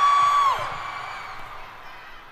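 A female pop singer holds a high note into a microphone, sliding down off it about half a second in, over a concert crowd's cheering that fades away.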